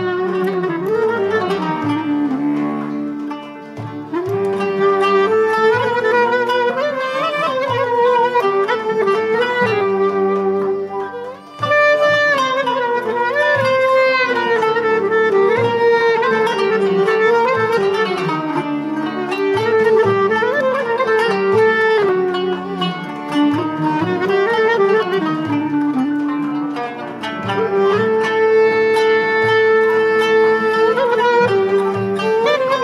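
Turkish classical music ensemble, with kanun and clarinet among its instruments, playing an instrumental peşrev in makam Hicaz, the instruments moving together on one melody. The playing briefly drops away about eleven seconds in and picks up again.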